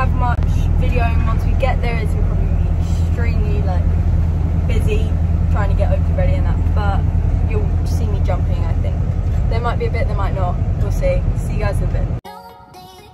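Steady low drone of a horsebox lorry's engine and running gear, heard from inside the cab while it drives. It stops suddenly at the end.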